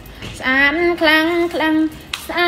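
A high-pitched voice singing a short melody in held, stepping notes, starting about half a second in.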